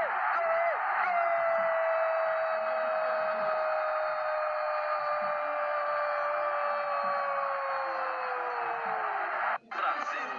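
Football TV commentator's long drawn-out 'goool' cry for a Brazil goal, held on one note for about eight seconds and slowly sinking in pitch before it breaks off near the end.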